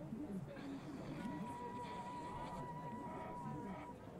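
Indistinct voices talking, with a steady high tone that comes in about a second in and holds for nearly three seconds.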